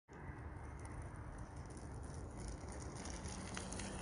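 Faint, steady outdoor background noise with a low rumble, picked up by a handheld phone's microphone, with a few light handling clicks near the end.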